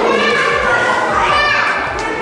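A young child's voice, calling out and chattering loudly at play, with other voices mixed in.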